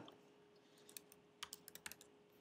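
Faint clicks of computer keyboard keys: a quick run of about eight keystrokes in the second half, typing a short word.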